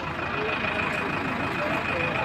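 Bus engine running with a steady low rumble, a thin steady high tone over it.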